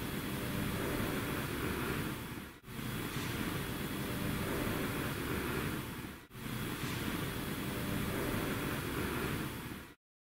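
A short snippet of a quiet room recording, boosted in volume so that heavy hiss and rumble fill it, played three times in a row with brief gaps between. It is presented as a faint ghostly voice, but no voice stands out clearly above the noise.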